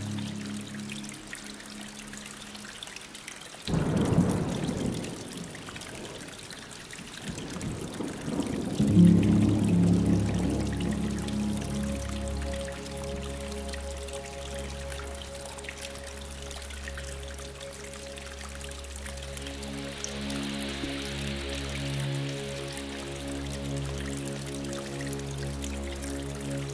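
Slow ambient background music of long held chords with a trickling water sound mixed in. A swell of rushing noise comes about four seconds in, and the chords build back up around nine seconds.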